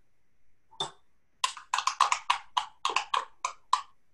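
A single light tap, then a quick run of short scraping clicks, about four a second, as pink salt is added to a bowl of goat cheese spread.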